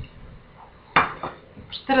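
A small plate set down on a table with one sharp clink about a second in.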